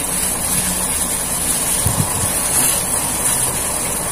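Water boiling hard in a cooking pot with chopped melinjo skins in it: a steady, even bubbling, with a light knock about two seconds in.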